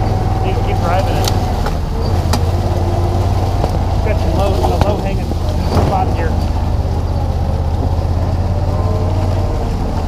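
Gator utility vehicle's engine running steadily as it drives slowly along a rough woodland trail, heard from the seat, with a few sharp clicks and knocks from the ride.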